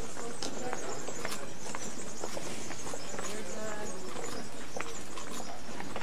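Many people's footsteps clicking irregularly on a stone-paved street, with a crowd talking in the background.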